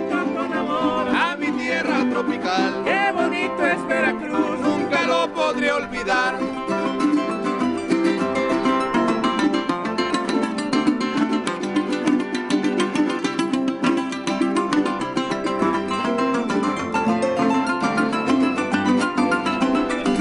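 Live son jarocho ensemble of harp, strummed jaranas and a pick-played requinto: singing over the strings for about the first six seconds, then an instrumental passage of fast, rhythmic strumming with plucked harp notes.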